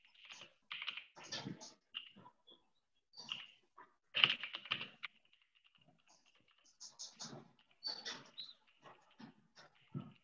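Typing on a computer keyboard in irregular bursts of keystrokes, the loudest run about four seconds in.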